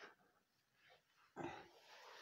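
Near silence, broken about one and a half seconds in by a brief, faint vocal sound from the crawling baby.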